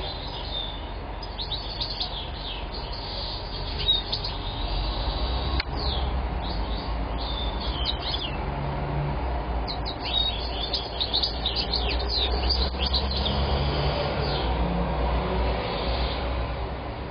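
European goldfinch singing: quick runs of high, twittering notes in phrases with short pauses between them. A low rumble runs underneath and grows louder about four seconds in.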